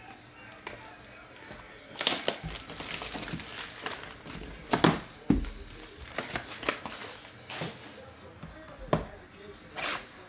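Plastic shrink wrap crinkling and tearing as it is peeled off a cardboard trading-card hobby box, with a dense rustle about two seconds in. Several sharp knocks follow as the cardboard boxes are handled and set down on the table.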